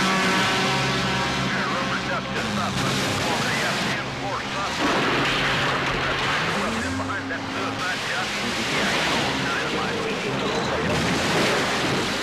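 Film sound of big-rig semi-trucks: engines running with loud rushing road and crash noise, and an engine note that rises about halfway through. Voices and the song's backing music sit faintly beneath.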